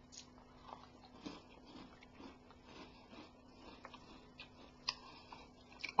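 A person chewing a crunchy chocolate snack, heard as a string of faint crunches and mouth clicks about every half second.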